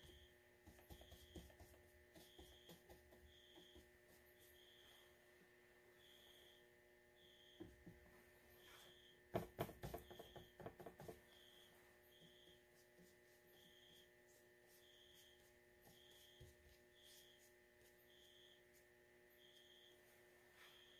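Near silence with a steady electrical hum. About nine seconds in, a short run of light clicks and taps as a paintbrush is worked in the pans of a plastic watercolour palette.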